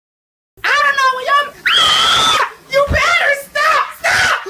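A young person yelling and screaming in alarm as a fire flares up in the room, starting about half a second in, with one long high scream in the middle.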